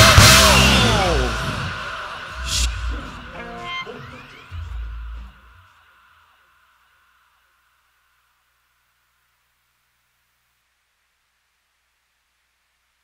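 A live rock band's closing chord ringing out and dying away over about two seconds, with a few low hits after it. Then only a faint steady hiss is left.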